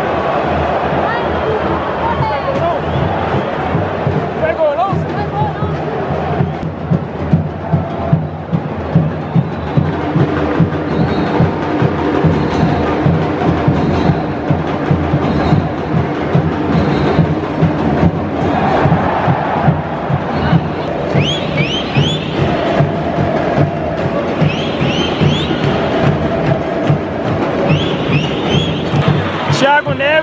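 Stadium football crowd singing and chanting together over a steady drum beat.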